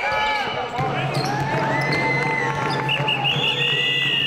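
Basketball sneakers squeaking on a hardwood court, many short rising-and-falling squeaks as players shift and move, with voices around them. A long, high, steady tone begins a little past three seconds in.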